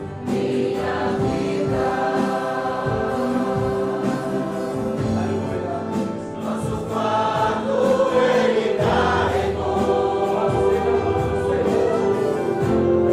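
Congregation singing a hymn in Portuguese with a live church band, drums keeping a steady beat under the voices.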